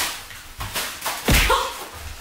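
Pillows being swung and tossed about: swishes and soft slaps, three in all, the last about a second and a quarter in the loudest, with a dull thud.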